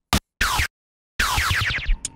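Short electronic samples made from a processed 808, played back one after another: a brief tick, a short burst, then after a moment of dead silence a longer sound whose tones glide downward together.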